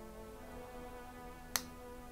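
Soft background music of sustained notes, with one sharp click about one and a half seconds in.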